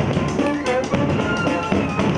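Live street band playing: brass and saxophones, with trumpets, trombone, alto saxophone, euphonium and sousaphone, over a beat from large metal-shelled bass drums and snare.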